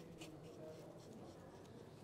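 Faint scratching of a paint marker tip stroked across paper as someone draws, over a low steady hum.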